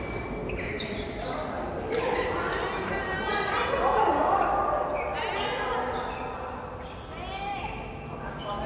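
Badminton rally: sharp smacks of rackets striking the shuttlecock every second or so, with voices calling out, echoing in a large hall.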